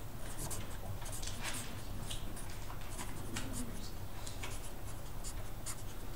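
Felt-tip marker writing on paper: a string of short, irregular strokes as words are written by hand, over a low steady hum.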